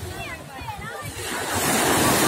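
Small sea waves washing onto a beach, the wash swelling louder in the second half, with distant voices and calls of bathers over it.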